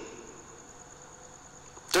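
A pause in a man's speech: steady faint room hiss with a thin, steady high-pitched whine. His voice trails off at the start and comes back at the very end.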